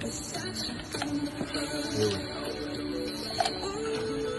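Music playing, with a few sharp clinks of ice cubes dropped into a metal cocktail shaker.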